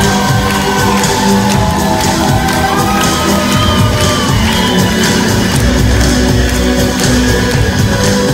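Live amplified music over PA speakers with a steady beat, with shouts and whoops from the crowd over it.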